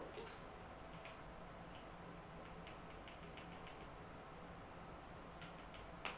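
Near silence: faint room tone with a thin high electronic whine and a few scattered faint ticks and clicks.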